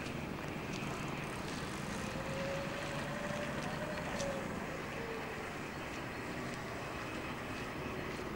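Steady outdoor noise with wind on the microphone and a faint distant engine hum that drifts slightly in pitch mid-way.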